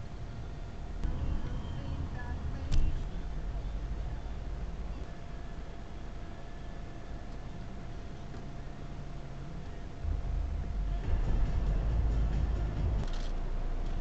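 Low engine and road rumble inside a car, picked up by a dashcam microphone, with one sharp click about three seconds in. The rumble gets louder about ten seconds in.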